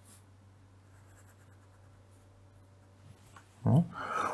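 Faint scratching of a felt-tip pen drawing a line on paper. A short burst of the man's voice comes near the end.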